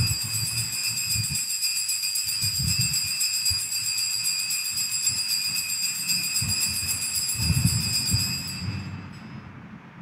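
Altar bells rung continuously at the elevation of the chalice during the consecration, a bright, steady jingling that stops about nine seconds in.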